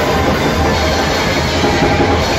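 Live heavy metal band playing, electric guitars and band in a steady, dense wall of sound.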